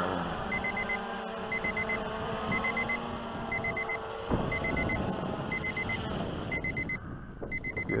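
Digital timer alarm beeping in quick groups of four, about once a second, over the whir of a multirotor drone's motors as it comes down to land; the motor noise turns rougher and louder about four seconds in.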